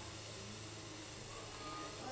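Faint steady hiss with a low hum: the background noise of an open microphone and PA system with nobody speaking.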